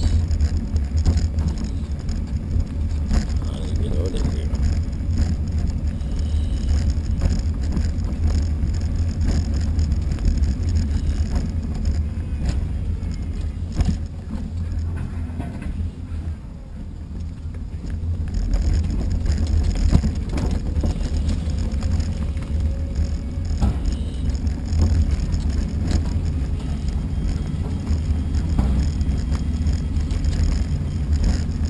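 Wind rumbling on the microphone of a moving camera, with rolling road noise from travelling along pavement. It goes quieter for a couple of seconds just past halfway, as the movement slows.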